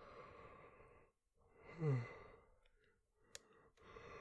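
A man's weary sighs close to the microphone: a long breathy exhale, then a voiced sigh that falls in pitch about two seconds in, with a small click and another breath near the end.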